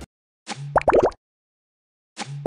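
Short electronic sound effect for an animated channel logo card: a brief burst, then a quick run of rising blips, lasting under a second.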